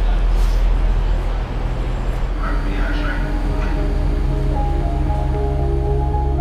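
Railway station platform ambience with a steady low rumble, then calm ambient music with long sustained tones fades in about halfway through.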